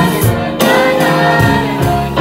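A group of young singers singing together in chorus through microphones. The sung phrases break briefly about half a second in and again near the 1.5-second mark.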